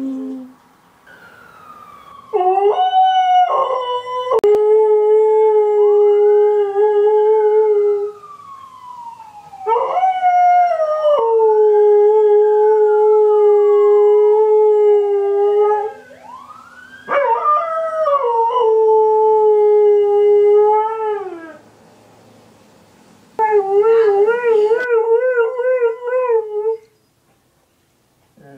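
Alaskan Malamute howling in four long howls. Each howl rises and then holds a steady note before it drops away, and the last one wavers. A siren wails faintly in the background, the sound she is howling along with.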